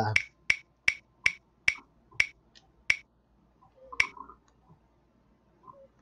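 Ticking of a spinning on-screen prize wheel: short sharp clicks about two to three a second that slow down as the wheel loses speed and stop with a last tick about four seconds in.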